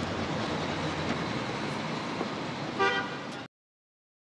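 City street traffic noise, steady, with one short car horn toot near the end; the sound cuts off abruptly about three and a half seconds in.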